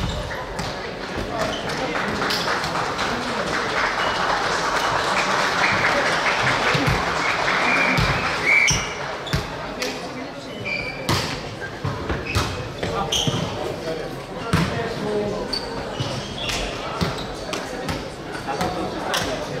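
Players and spectators shouting in an echoing sports hall during a volleyball match, the voices building over the first eight seconds or so and then falling away. Scattered sharp knocks of the volleyball being hit and bouncing follow.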